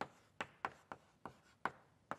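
Chalk writing on a blackboard: about six sharp, irregular taps and short scrapes as the strokes and letters are put down.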